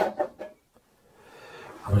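A few light clicks and knocks in the first half second as the removed metal cover plate of the inverter is handled, then a faint hiss.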